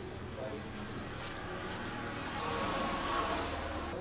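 Street ambience with a motor vehicle passing: a broad engine-and-tyre noise swells to its loudest about three seconds in, then eases, over a steady low hum.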